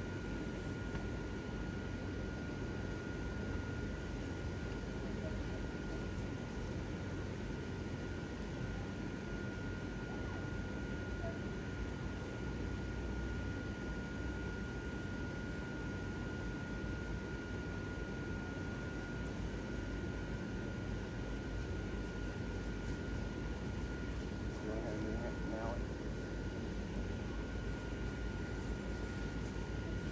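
Steady whir of airblown inflatables' blower fans running, a low rushing noise with a thin steady high tone over it.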